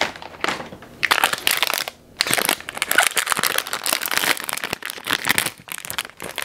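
Plastic wrapper of an ice cream bar crinkling as it is torn open and pulled off, in rapid crackly bursts with a brief pause about two seconds in.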